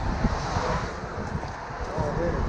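Road traffic passing on a main road, a vehicle's rush swelling in the first half, with wind blowing on the microphone.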